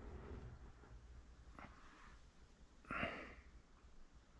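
Quiet room tone with a faint tick about one and a half seconds in, then a short breathy exhale about three seconds in.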